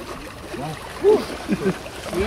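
Indistinct voices of people talking, a few short words or calls, over a faint steady hiss.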